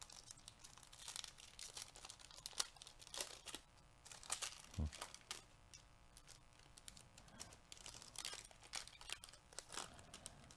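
Foil trading-card pack wrapper crinkling and tearing as gloved hands work it open: faint, irregular crackles.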